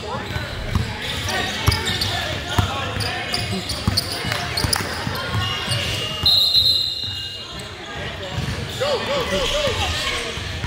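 A basketball dribbled on a hardwood gym floor, short repeated bounces heard over players' and spectators' voices in a reverberant gym.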